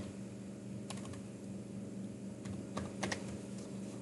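A few scattered computer keyboard keystrokes, single faint clicks at uneven intervals over a steady low hum.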